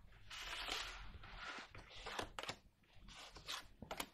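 Tarot cards being slid out of a fanned deck and across a wooden tabletop, faint swishes of card on wood with a few light taps as cards are laid down in a spread.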